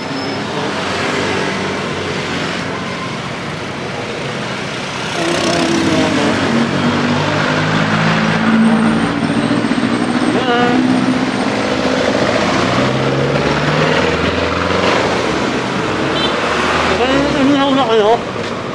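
Street traffic: motor vehicle engines and road noise, growing louder about five seconds in as an engine runs close by for about ten seconds.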